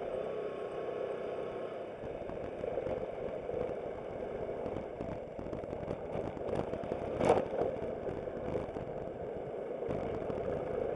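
Aprilia Sport City scooter's engine running with road noise as it moves off from a stop and rides through an intersection. One sharp knock stands out about seven seconds in.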